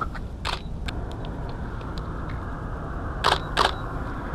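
Nikon D800 DSLR shutter clicking: one sharp click about half a second in and two more in quick succession near the end, with faint ticks between them, over a steady low background rumble.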